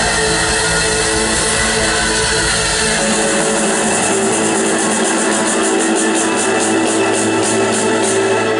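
Live band music playing loudly. About three seconds in the deep bass drops out, and an even, fast high ticking beat runs through the second half.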